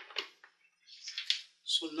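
Short soft clicks and a brief rustle in a pause between stretches of a man's speech, as wires and speed controllers are handled on a table.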